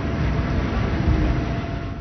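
Steady engine and wind noise from the race's live broadcast sound, heard behind a bunch of racing cyclists.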